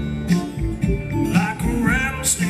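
Acoustic guitar played flat on the lap with a slide, notes gliding in pitch over a steady bass pulse of about two beats a second.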